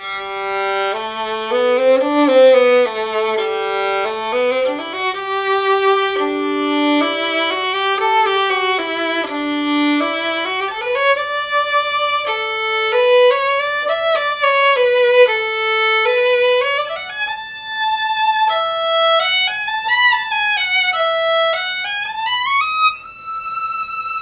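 Mezzo-Forte Design Line carbon-fibre violin bowed acoustically, not through its pickup: a slow melody that opens with two notes sounding together in the lower range, then climbs as a single line and ends on a long-held high note near the end.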